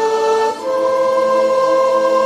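Concert flute playing a slow melody: a held note that steps up about half a second in to a long sustained note, over a quieter backing accompaniment.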